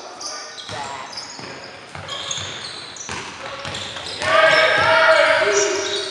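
Basketball game sounds in a sports hall: a ball bouncing on the court floor a few times and sneakers squeaking. A loud held shout lasts about a second just past the middle and is the loudest sound.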